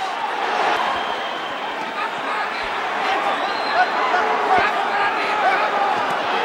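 Arena crowd at a live boxing match: a steady hubbub of many voices with scattered shouts, and a couple of faint dull thumps.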